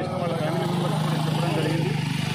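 A motor vehicle's engine running close by: a steady low hum with rapid, even firing pulses, heard under voices.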